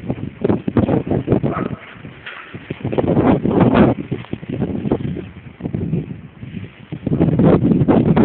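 Footsteps crunching and scuffing over rough, rubbly ground with rustling handling noise on the camera. The knocks come in quick irregular runs, one cluster early and one about three seconds in.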